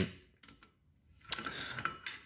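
Steel blacksmith's tongs knocking against the anvil as they are handled: two light metal clicks in the second half, the first with a short ring.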